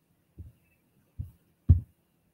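Three short, dull low thumps, each louder than the one before, with the last the loudest.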